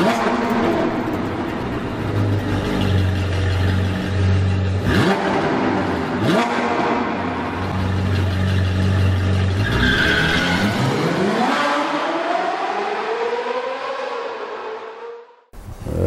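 Sports car engine sound effects for a show intro: a steady low engine drone broken by two quick whooshes, then a long rev whose pitch rises and falls before cutting off sharply about half a second before the end.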